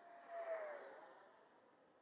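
FMS 70mm Viper Jet's electric ducted fan, a 1900kv fan unit, flying past: a rush with a whine that swells to a peak about half a second in and drops in pitch as the jet goes by, then fades.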